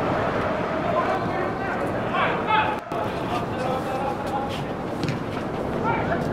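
Soccer pitch ambience: a steady background hiss of open-air noise, with faint distant voices of players calling out on the field.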